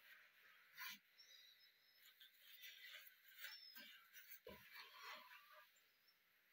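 Near silence: bathroom room tone with a few faint knocks and small rustles, the clearest knock about four and a half seconds in.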